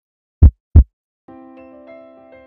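Heartbeat sound effect: one deep lub-dub double thump. Soft, sustained keyboard music begins about two-thirds of the way through.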